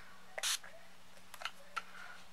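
A trigger spray bottle of brush-cleaning solution spraying once in a short hiss about half a second in, followed by a few faint clicks.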